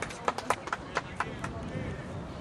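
Voices of players calling out on an outdoor football pitch, over a string of sharp, irregular claps and impacts.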